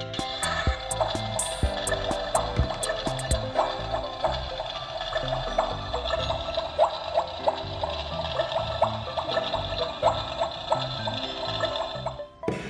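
Toy kitchen stove's electronic boiling sound effect, switched on by turning its burner knob: a steady hiss full of small crackles that stops abruptly at the end, over background music.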